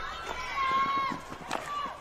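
Pitch-side sound of a field hockey match in play: a high-pitched shout from a player or spectator, then a single sharp knock about one and a half seconds in, typical of a hockey stick striking the ball.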